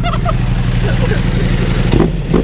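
Ducati Multistrada V4 engine idling steadily through a full Akrapovic exhaust system, with an even low beat.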